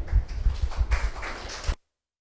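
Handling noise from a handheld microphone: low bumps and rustles as it is lowered and passed along. The sound cuts out abruptly near the end, as if the microphone channel was switched off.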